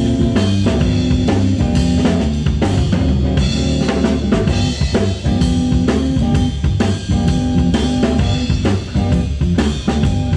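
Live blues band playing: a drum kit keeping a steady beat with snare and bass drum under electric guitar and a moving bass line.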